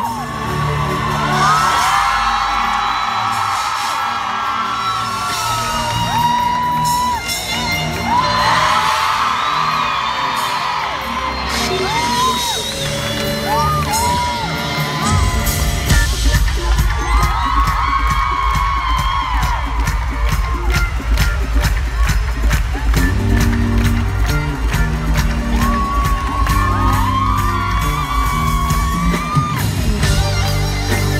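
Recorded intro music playing over an arena sound system while the crowd screams and whoops. About halfway in, a heavy bass beat comes in and the music grows louder.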